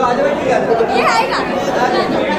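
Audience chatter: several people talking over one another, with one higher voice rising briefly about a second in.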